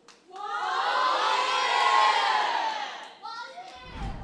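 A crowd of many high-pitched voices cheering together. The cheer swells in, holds loudest around the middle, and dies away about three seconds in.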